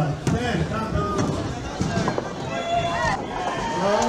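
Ninepin bowling balls knocking down onto the lanes and rolling, with several sharp knocks of balls and pins, under people's voices.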